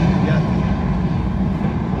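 A steady low rumble of background noise with faint voices in it.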